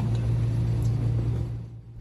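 A steady low mechanical hum with a hiss over it, fading out shortly before the end.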